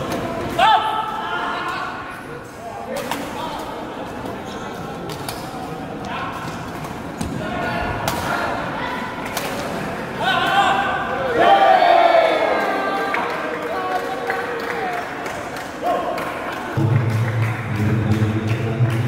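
Badminton rally: sharp racket strikes on a shuttlecock and players' footwork on the court, with shouts and voices echoing in a large hall. A low steady drone comes in near the end.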